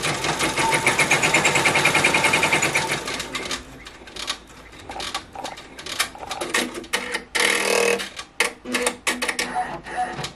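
Ricoma embroidery machine stitching down chunky chenille yarn. A fast, steady run of stitches fills the first few seconds, then it slows to separate, spaced stitches as the design nears its end.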